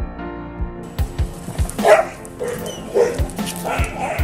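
A dog giving a few short barks, about a second apart, over background music with a steady beat.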